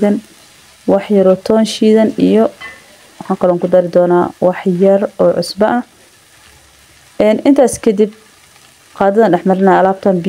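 A woman's voice in four short pitched phrases, with quiet pauses between them and no clear words.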